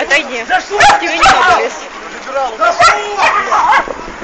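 A woman's shrill, agitated shouting in short broken bursts, with other voices nearby.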